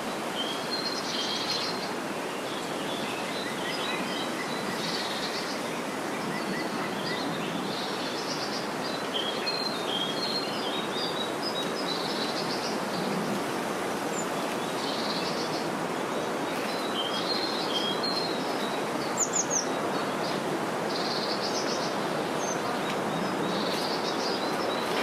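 Small birds chirping and twittering on and off throughout, over a steady hiss of outdoor background noise.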